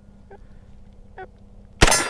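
A single shot from a 9 mm HK SP5 near the end, followed at once by a steel target ringing on after the hit.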